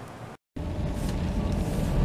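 After a brief dropout, the steady low rumble of a car heard from inside the cabin, engine running.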